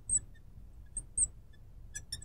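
Marker tip squeaking faintly on a glass lightboard as a word is written: a few short high chirps, one right at the start and two close together about a second in.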